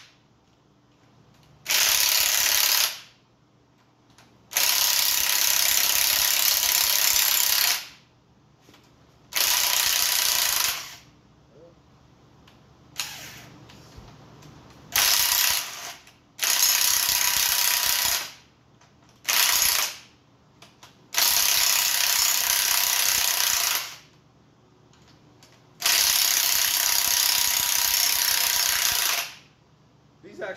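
Cordless impact wrench hammering rocker arm nuts loose on an engine's cylinder head, in about nine bursts from half a second to three seconds long with short pauses between.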